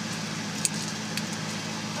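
Steady low hum of a car's cabin with the engine running, and two faint short clicks about half a second and just over a second in.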